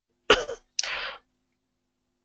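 A man's short cough and throat-clear: two quick bursts about half a second apart, the first sharp and the loudest, the second a rougher rasp.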